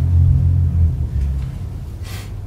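A loud low rumble that fades out about a second and a half in.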